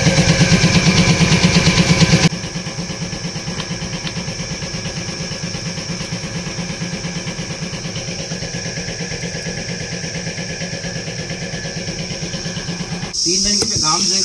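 An engine idling with an even low throb, which becomes quieter about two seconds in.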